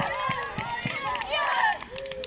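Several high-pitched young voices shouting and calling over one another, excited cries as a youth football team celebrates a goal.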